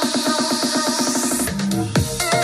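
Electronic dance music playing through a Bose Wave SoundTouch Music System IV: a fast beat under a rising sweep, which breaks off at about a second and a half into heavy bass.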